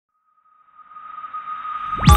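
Intro sound effect: a single steady high tone over a swelling whoosh that grows from silence to fairly loud, the build-up of a channel intro jingle.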